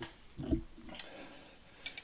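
Faint handling noise: a soft knock about half a second in, then light clicks about a second in and again near the end, from a metal post and flange being handled.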